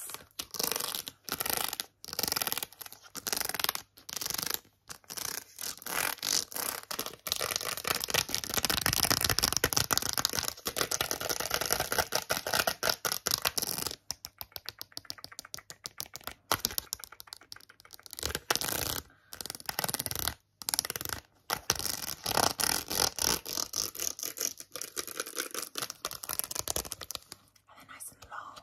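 Long acrylic fingernails rapidly tapping and scratching on a card of press-on nails, plastic nail tips on a cardboard backing. Quick runs of clicking taps give way to stretches of continuous scratching.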